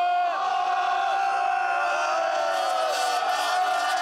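A man's single long, held yell, nearly steady in pitch and sinking slightly near the end, over a crowd of football supporters cheering a victory.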